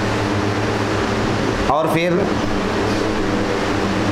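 A steady low hum with an even hiss beneath it. A man speaks two words about two seconds in.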